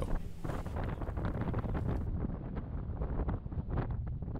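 Wind buffeting the microphone: an uneven low rush broken by small crackling gusts.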